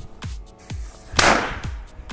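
A firecracker goes off with one sharp bang a little over a second in, its fuse lit by focused sunlight. Background music plays underneath.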